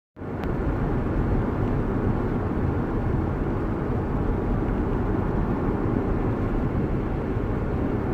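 Steady rumble of a car in motion heard from inside the cabin, engine and road noise together, with a faint click about half a second in.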